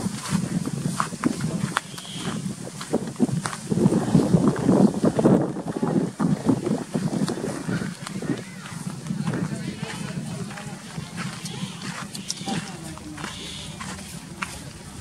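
Indistinct human voices talking, louder in the first half and fading after about eight seconds, over outdoor background noise.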